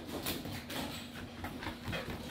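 A large dog's claws clicking on a bare wooden floor as it walks, in irregular taps several times a second.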